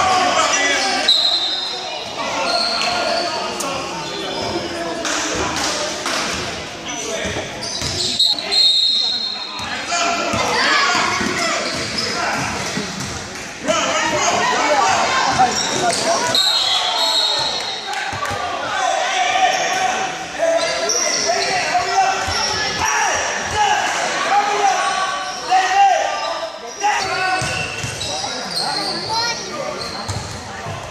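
Basketball game in a large gym: a ball bouncing on the court floor amid spectators' and players' talk and shouts, all echoing in the hall.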